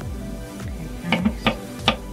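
Kitchen knife cutting a red bell pepper on a wooden cutting board: three sharp knocks of the blade on the board in the second half, over background music.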